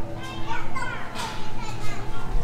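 Children's voices, kids playing and calling out in the background, with no clear words.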